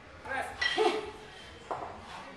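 A brief burst of a person's voice, then a single sharp knock near the end.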